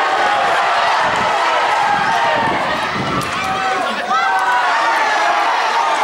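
Several people shouting and calling over one another, loud and without a break, with no single voice standing out clearly.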